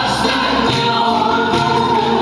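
Live Turkish folk song (türkü) music: singing a held, wavering melody over instrumental backing with a steady beat.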